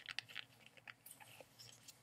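Faint crinkling and rustling of paper being handled, a scatter of small crackles that thins out toward the end.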